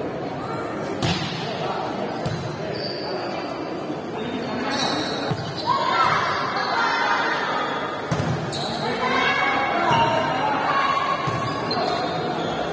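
Volleyball being hit during a rally: a series of sharp smacks of the ball, spaced a second or two apart, with voices shouting and chattering throughout.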